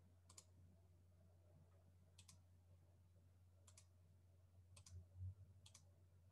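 Faint computer mouse clicks: five quick press-and-release double clicks spread a second or so apart, over a steady low electrical hum, with a soft low thump a little after five seconds in.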